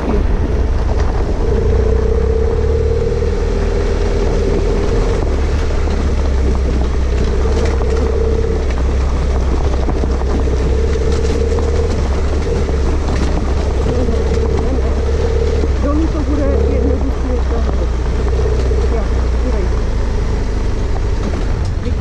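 Off-road motorcycle engine running at steady low revs while riding down a loose gravel track, a wavering engine tone that drops out and returns, over a constant low rumble of wind buffeting the helmet camera.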